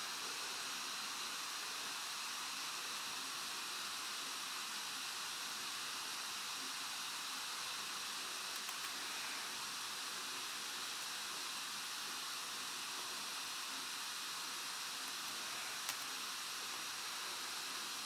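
Steady, even hiss of room tone and microphone noise, with one faint click near the end.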